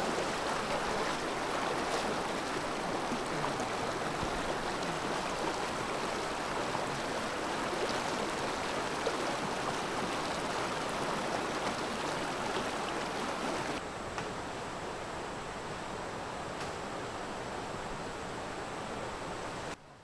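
Shallow rocky river running fast over stones: a steady rush of water. It drops a little in level about fourteen seconds in and cuts off just before the end.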